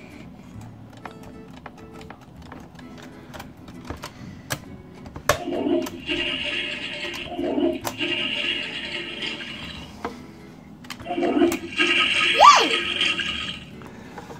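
Toy toilet from the Toilet Trouble game playing its flushing sound effect twice, each a few seconds of hissing, rushing flush noise. Light plastic clicks of the handle being worked come before the flushes.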